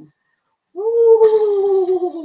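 A woman imitating a horse's neigh: one long, loud vocal note starting under a second in, sliding slowly down in pitch.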